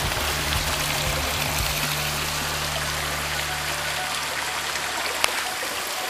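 Hot spring water running and trickling over rocks and through pipes into a pool, a steady rushing sound. A low hum underneath fades away about five seconds in, and there is one sharp click near the end.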